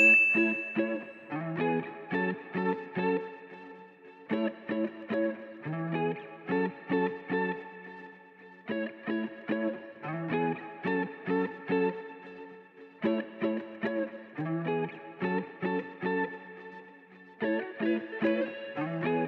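Background music: a looping plucked-guitar melody, its phrase repeating about every four seconds. A bright chime rings for about a second right at the start.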